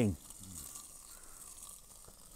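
Burning bacon fat dripping from a flambadou onto a ribeye searing on a kamado grill, giving a faint, steady sizzle and crackle.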